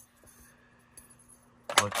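Ceramic CPU handled in the fingers over a motherboard: a single faint small click about a second in, against a quiet background with a steady low hum.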